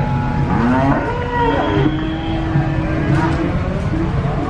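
Cattle mooing: one long drawn-out call that rises in pitch at first and then holds steady for over a second, ending about three seconds in, over a steady low rumble.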